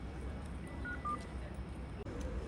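Two short electronic beeps in quick succession about a second in, the second lower in pitch, over a steady low hum.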